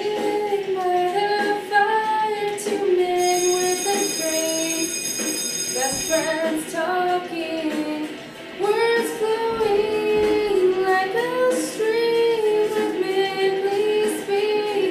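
A young female voice singing a melody, with long held notes that bend between pitches and a short break a little past the middle.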